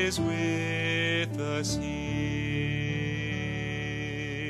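A man singing a slow worship song over sustained electric keyboard chords, a few words near the start, then one long held note with vibrato as the phrase ends and the sound slowly fades.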